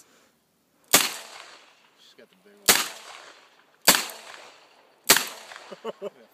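.357 handgun fired four times, about a second and a half apart, each sharp report followed by a short decaying echo.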